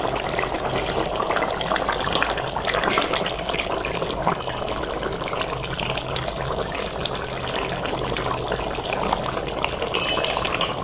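Meat and tinda curry boiling in a steel pot, the thick gravy bubbling and sputtering steadily.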